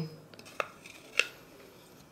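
Two light clicks, about half a second apart, as a small glass bowl is tipped against the rim of a plastic food-chopper bowl to pour honey and water in.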